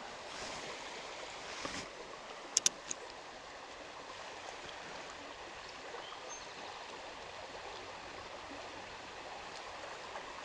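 Small creek running steadily, with two short sharp clicks about two and a half seconds in.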